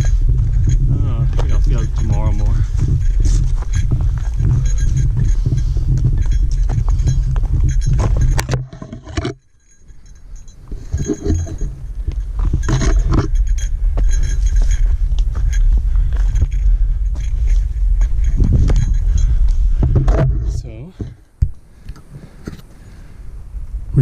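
Footsteps on a mountain trail with clinking and jangling of a running vest's gear, over a heavy low wind rumble on a body-worn camera's microphone. The rumble drops away briefly twice.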